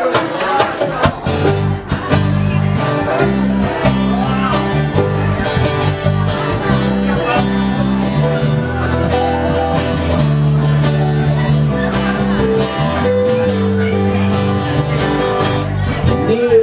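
Live band playing a song's instrumental intro: strummed acoustic guitars over sustained electric bass notes, at a steady loud level.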